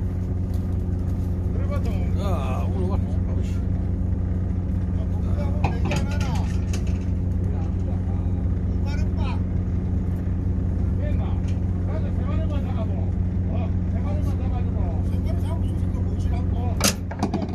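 A fishing boat's engine running steadily at idle, a constant low hum, with voices talking over it now and then.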